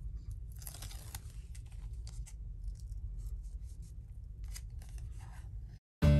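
Release liner being peeled off a strip of double-sided Tear & Tape adhesive on card stock, with paper-handling rustles: faint, brief scratchy tearing strokes over a low steady hum. The sound cuts off suddenly near the end.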